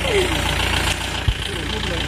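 A vehicle engine idling steadily as a low, even rumble, with one brief low thump a little past halfway.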